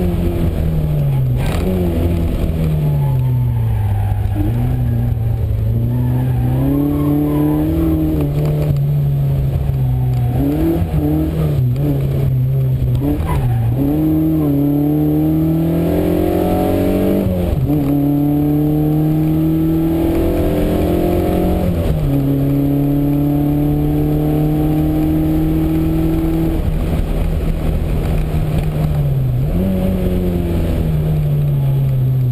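1979 Volkswagen Golf GTI's four-cylinder engine heard from inside the cabin under race driving. Its pitch climbs under acceleration, sags when the driver lifts off, and drops suddenly at gear changes, twice in the second half.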